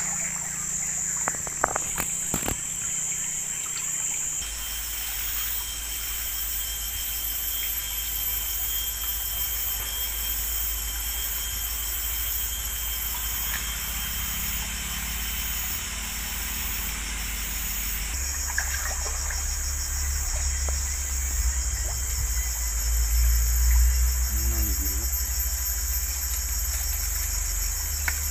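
Forest insect chorus: a steady, high-pitched buzzing with a fine pulsing rhythm. A low rumble runs underneath, louder in the second half, and there are a few sharp clicks near the start.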